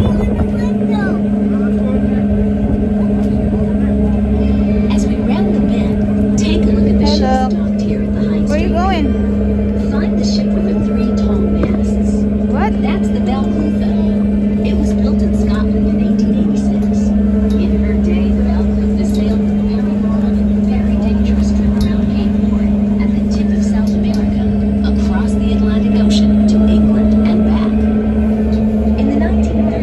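Steady low drone of a tour boat's engines, holding one pitch throughout, with indistinct voices of passengers on deck over it.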